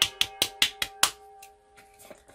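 A quick run of light, even taps, about five a second, for about a second, as a powder puff works loose setting powder from its jar. A steady tone hangs beneath the taps and fades out near the end.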